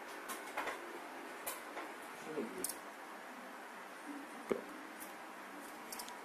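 Cardboard packaging being handled and worked open by hand: scattered soft clicks and rustles, with one sharper tap about four and a half seconds in.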